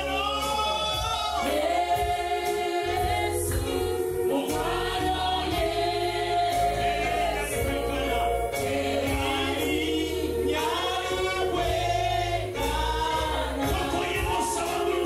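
Live gospel worship singing through microphones, with voices holding long, bending notes over a steady low backing.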